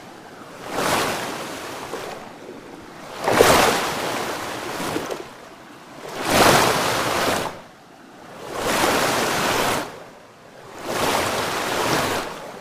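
Water splashing into a shallow tub of water in repeated surges, about five in all, each lasting a second or so, with quieter gaps between them.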